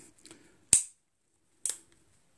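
Two sharp metallic clicks, about a second apart, from the action of a Ruger New Model Blackhawk .357 Magnum single-action revolver as it is handled during loading.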